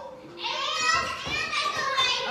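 Young children's voices talking, high-pitched and overlapping, from about half a second in.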